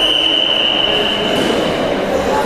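Referee's whistle: one long steady blast, stopping the wrestling bout.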